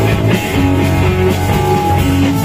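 Live rock band playing loudly: electric guitars, bass guitar, keyboards and a drum kit together.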